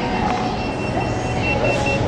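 A rapid series of short, high electronic beeps, about five a second, growing clearer in the second half, over a steady low background hum.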